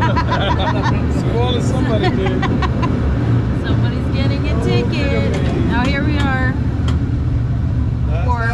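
Powell-Hyde cable car running downhill, a steady low rumble from the car on its track with scattered short clicks and rattles. People's voices talk over it, most around the middle of the stretch.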